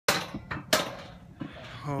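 Three sharp knocks in the first second, the loudest just after the start, then a man's voice beginning an excited exclamation near the end.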